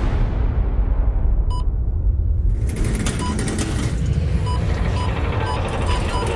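A deep rumble with a single electronic beep about a second and a half in, then, from about three seconds, a car's obstacle-warning sensor sounding short beeps that come closer together.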